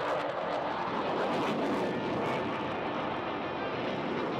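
Jet noise from the twin Saturn AL-41F1S turbofans of a Sukhoi Su-35S fighter flying a high-angle aerobatic manoeuvre: a steady, dense rushing sound with a faint crackle.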